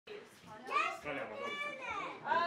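A child speaking in a high voice, several short phrases.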